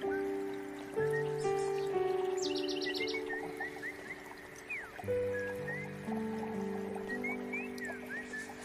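Slow, calm background music of long held chords that change about every second, with short bird chirps laid over it.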